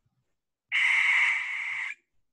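American barn owl's screech call, played from a recording: one harsh, hissing scream lasting just over a second. It starts about two-thirds of a second in and stops abruptly.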